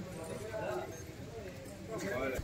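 Indistinct background voices of people talking, with faint knocking sounds among them.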